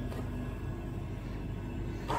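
A steady low machine hum with no distinct events over it.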